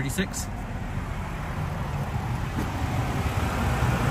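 Nissan Rogue's 2.5-litre four-cylinder engine idling with a steady low hum, and a rushing outdoor noise growing slightly louder toward the end.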